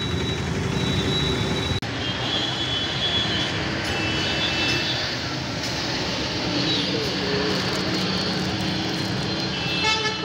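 Street traffic in a jam: engines of scooters, motorcycles and cars running in a steady din, with several horns honking in short blasts during the first half.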